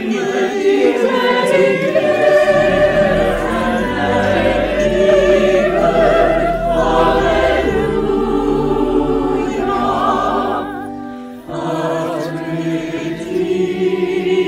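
Virtual choir of men's and women's voices singing an anthem in parts, mixed from separately recorded singers. The singing dips briefly about eleven seconds in, then comes back.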